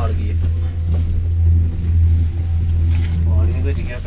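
Steady low rumble inside a cable-car gondola cabin as it travels along its cable, with a faint voice or two near the end.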